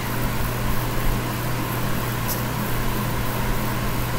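Steady low hum with an even hiss over it: constant room background noise.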